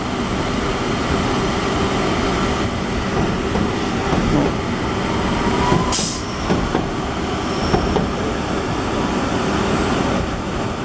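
Southern Class 377 Electrostar electric multiple unit moving past at low speed alongside the platform, its wheels and running gear making a steady rumble, with a sharp click about six seconds in.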